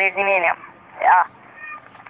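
Voice-changer app playing back a recorded spoken phrase through a voice effect: a strange, pitched, processed voice in two sounds, a longer one at the start and a shorter one about a second in.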